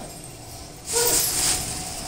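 A plastic carrier bag rustling and crinkling as it is grabbed and lifted, starting suddenly about a second in and easing off after half a second.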